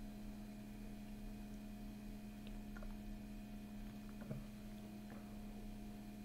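Quiet room tone with a steady low hum, and a few faint soft clicks and sips as a man drinks beer from a glass.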